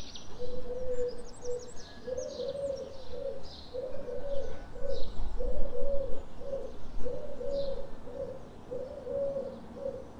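A dove cooing a low, repeated phrase of three notes, one phrase about every one and a half seconds, while swallows twitter and chirp high above it.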